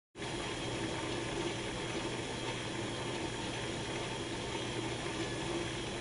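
Steady rush of running water with a low, even hum beneath it.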